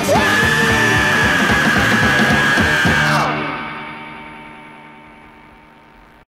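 Closing bars of a garage-rock song: the full band plays loud under a long held high note, then stops about three seconds in and the last chord rings away, fading steadily.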